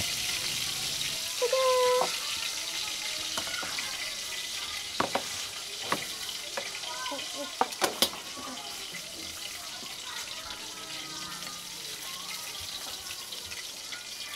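Steady sizzling hiss of tilapia frying in a wok of oil, with a few sharp utensil clicks in the middle.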